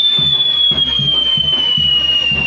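Whistling fireworks on a burning castillo tower: one long, steady whistle that slowly falls in pitch. Under it, music with a steady low beat.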